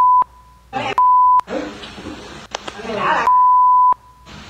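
Censor bleeps covering swear words in a recorded family argument: a steady high beep that cuts off just after the start, sounds briefly about a second in, and again for about half a second near the end, with voices between the beeps.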